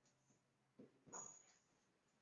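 Near silence, with a few faint short strokes of a marker writing on a whiteboard, one about a second in with a thin high squeak.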